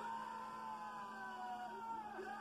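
A long, held yell of celebration as the match-winning point falls, its pitch sliding slowly down for nearly two seconds.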